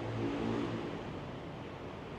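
A motor vehicle engine passing, swelling early on and fading after about a second, over a steady low hum.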